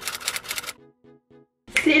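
Typewriter key-click sound effect: rapid sharp clacks, about seven a second, that stop about three quarters of a second in, followed by a few soft short low notes.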